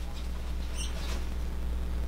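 Faint squeaks and rubbing of nitrile-gloved fingers handling a cut, leathery ball python egg, with a few short high squeaks about a second in, over a steady low hum.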